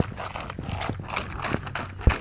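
Child's plastic strap-on roller skates rolling on asphalt, a rough rolling noise with irregular clacks as the skates strike and scrape the road.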